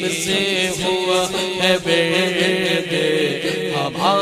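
A male naat reciter singing a devotional kalam in praise of Ali in a drawn-out, ornamented melodic line into a microphone, with no instruments, over a steady low sustained drone.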